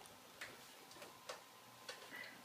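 Near silence broken by four faint, irregular clicks from the camera being handled as it is set in place.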